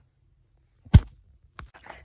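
Dead silence, then a single sharp thump about a second in, followed by a couple of faint clicks.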